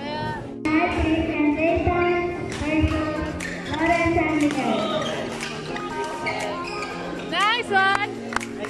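Badminton doubles rally on an indoor court: rackets hitting the shuttlecock and shoes squeaking on the court floor, with a burst of sharp squeaks near the end, over background music and voices in the hall.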